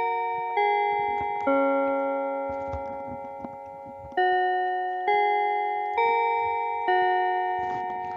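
Bell-like chime music: a phrase of four struck notes about a second apart, a longer pause, then another four, each note ringing on and fading away.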